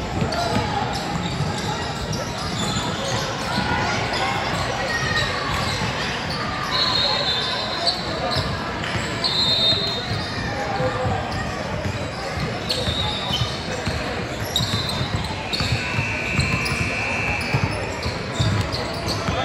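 Indoor youth basketball game: a ball dribbling on a hardwood court and sneakers squeaking, under the voices of players and spectators, all echoing in a large gym. A few short high squeaks come through, and a longer held squeak or call near the end.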